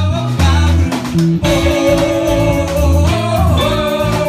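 Live rock band playing: electric guitars and drums over a pulsing bass line, with a singer holding a long note through the second half.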